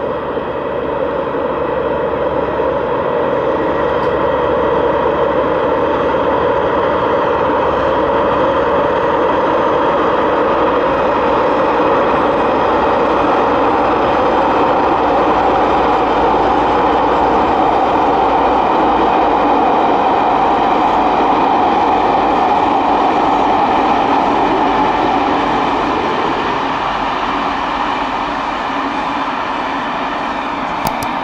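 A Class 47 diesel locomotive with its Sulzer engine running under power as it hauls a train of coaches past. The sound grows louder over the first few seconds, holds through the middle, and eases off in the last few seconds as the train draws away.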